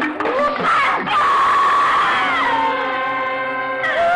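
A woman's high, drawn-out wailing cry that holds and then falls away, over sustained background film music.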